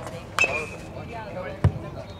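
A metal baseball bat strikes a pitched ball about half a second in, a sharp ping that rings briefly, and voices call out right after it. A heavier dull thump comes near the end.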